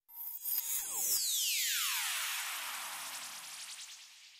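Electronic sound effect: a sweep that falls steadily in pitch over about three seconds, with a hiss behind it, fading away near the end.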